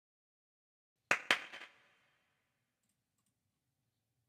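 Two sharp clicks about a second in, a fifth of a second apart, with a brief faint rattle after them; otherwise the recording is silent.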